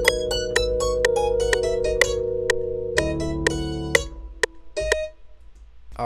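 Electric piano (Rhodes-style) chords playing back with quick plucked notes over them and a steady click about twice a second. The chord changes about three seconds in, the music dies away about a second later, and one short last note sounds near the five-second mark.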